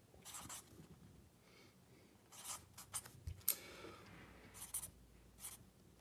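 Sharpie marker writing on notepad paper: faint, short, intermittent scratchy strokes as letters are drawn.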